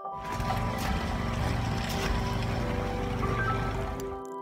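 Wind on the microphone: a steady rushing rumble, heaviest in the low end, that starts and stops abruptly, with soft piano music faintly underneath.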